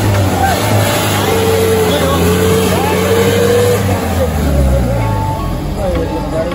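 A vehicle engine running steadily under load as it works through deep mud, with a low drone throughout.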